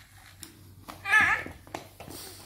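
A brief wordless voice sound, a second or so in, that bends up and down in pitch, over quiet room tone with a few faint clicks from plastic toy trains being handled.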